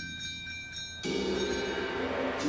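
Percussion ensemble music: metallic bell-like tones ring on after a run of struck percussion, and about a second in a lower sustained cluster of tones enters.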